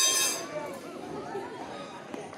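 A coin dropped into a small metal cup, one sharp clink at the start that rings on for about half a second.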